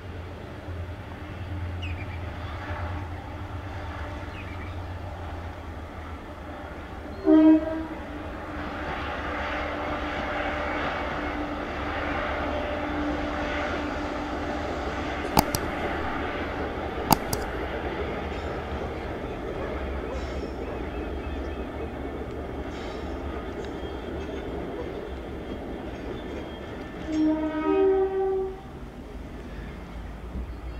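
Pair of DRS Class 68 diesel locomotives hauling a train past with engines running steadily. Its horn sounds a short, loud blast about seven seconds in and a two-tone blast, low note then high, near the end.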